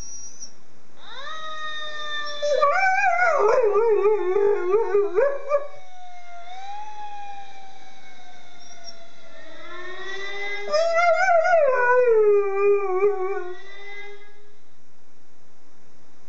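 American Staffordshire Terrier howling in imitation of a siren, in two long wavering howls. The second howl slides down in pitch.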